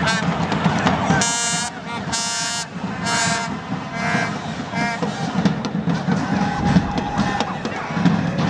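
Football stadium crowd noise with fans' horns blown in four short, bright blasts over the first half, and a fainter held tone later on.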